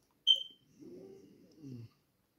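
A single short, high electronic beep, then a quieter low voice for about a second.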